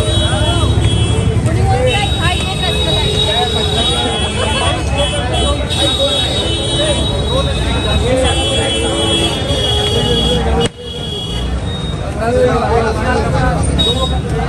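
Dense crowd chatter on a busy street, with vehicle horns blaring again and again in long, steady, high-pitched blasts over it. About eleven seconds in, the sound drops sharply for a moment, then the chatter comes back.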